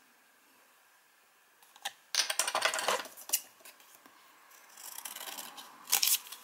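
A small stiff cardboard pocket calendar being handled and flexed between the fingers: a cluster of sharp clicks and rustles about two seconds in, then softer rustling and a few clicks near the end.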